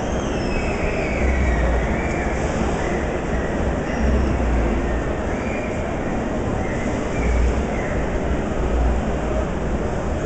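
Rear-mounted engine of a Sunbeam running with a steady, dense mechanical noise. A low rumble swells and fades every couple of seconds, with faint wavering high squeals over it.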